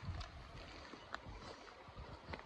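Quiet outdoor background: a faint low rumble with two soft clicks, one shortly after the start and one just past the middle.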